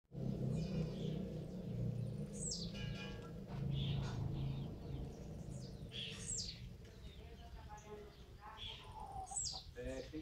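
Bird calls: a high, steeply falling call repeated three times, about every three and a half seconds, with smaller chirps between, over a low background hum that fades about halfway through.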